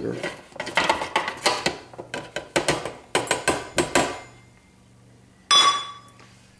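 Metal measuring cup knocking against a plastic food processor bowl while confectioners' sugar is tipped in, a quick irregular run of knocks for about four seconds. Near the end comes one sharp metallic clank that rings briefly.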